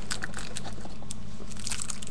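Light crinkling and small clicks of a plastic-wrapped metal e-cigarette being handled and lifted from its presentation box, thickening near the end. A steady low hum runs underneath.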